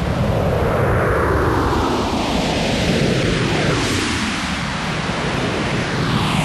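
A spaceship flight sound effect: a loud, steady rushing noise with a swooshing sweep that falls in pitch several times, like a fast flyby.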